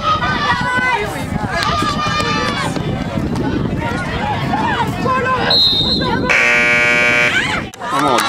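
Spectators shouting and cheering during a football play, then a short, steady high whistle blast and a loud buzzing horn lasting about a second and a half, which cuts off suddenly.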